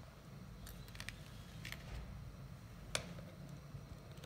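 A few light metallic clicks and taps as a hex key and small metal parts are handled on a reed tip profiling machine, the sharpest click about three seconds in.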